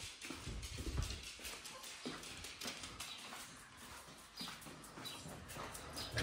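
Faint, irregular footsteps on a wooden floor as someone walks across a room, with small knocks and handling noise in between.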